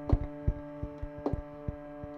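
A live violin-and-electronics piece: a drone holds several steady notes while soft low thumps pulse unevenly, about two to four a second.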